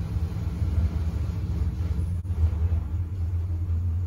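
A loud, steady low rumble with no clear pitch, continuing throughout.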